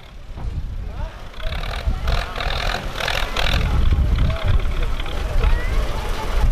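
Crowd of riders and spectators at a kupkari scrum: many voices shouting and calling over each other above a loud, uneven low rumble that swells after about the first second.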